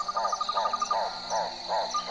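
Chorus of calling animals of the frog-and-insect kind: a call repeating about three times a second, a rapid high trill lasting about a second that starts again near the end, over a steady high drone.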